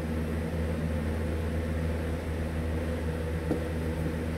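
Steady low machine hum in a small room, with a light tap about three and a half seconds in.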